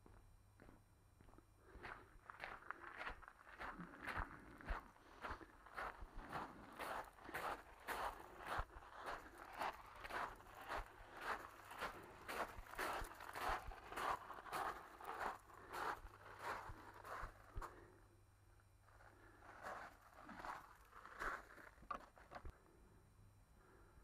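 Footsteps of a person walking on a gravel path, a steady pace of about two steps a second, thinning to a few softer, spaced-out steps near the end.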